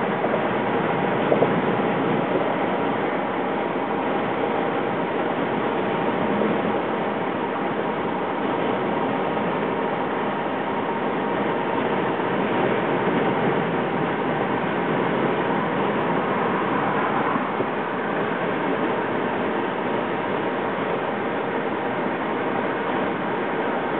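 Steady road and wind noise of a moving car, heard from inside the cabin.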